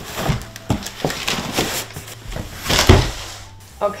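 Cardboard boxes scraping and rubbing as a boxed baby swing is pulled out of a larger shipping box, with a heavier thump about three seconds in as the box is set down.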